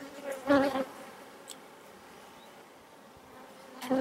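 Honey bees buzzing softly and steadily on a frame lifted out of the hive. A brief vocal sound comes about half a second in.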